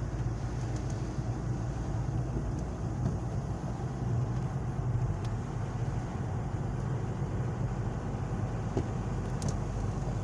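Steady low rumble of a car driving, engine and tyre noise heard from inside the cabin.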